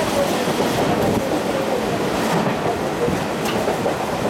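Mumbai suburban train carriage running at speed, a steady loud rumble and rattle heard from inside the luggage compartment beside an open mesh window.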